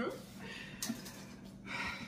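Quiet handling of a cardboard box, with a couple of light knocks about halfway through, and a short breathy vocal sound near the end.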